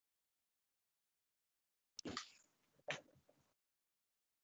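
Near silence, broken about halfway through by two short, sharp sounds about a second apart, each fading quickly.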